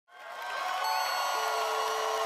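Crowd cheering and shouting, fading in from silence over the first half second, with a few steady held tones over the noise.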